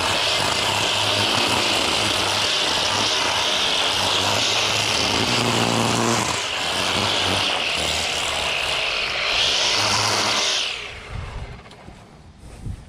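Husqvarna 325iLK string trimmer with its two-stroke engine held at full throttle, the spinning line cutting along a concrete walkway edge. Near the end the throttle is let off and the engine winds down.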